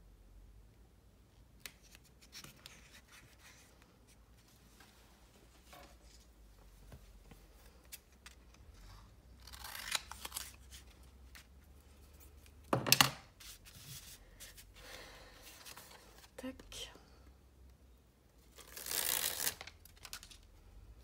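Paper and card being handled on a cutting mat: quiet rustles and small clicks, a noisy rustle about ten seconds in, a sharp knock about thirteen seconds in, the loudest sound, and a longer rasping rustle near the end.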